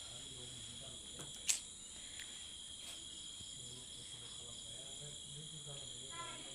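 Crickets trilling steadily in a continuous high-pitched chorus, with a single sharp click about one and a half seconds in.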